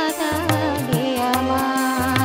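A woman sings a song with instrumental accompaniment and a regular drum beat. About halfway through she holds one long note.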